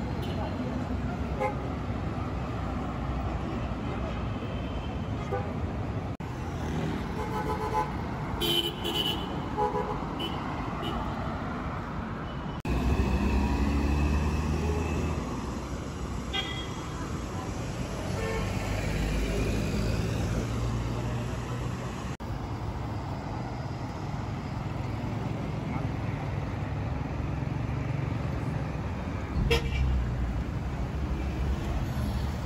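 Busy street traffic: cars and minibuses passing with engines running, several short car-horn toots, and people's voices. A vehicle passes close and loud about halfway through.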